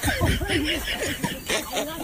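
Several people snickering and laughing in overlapping, short bursts.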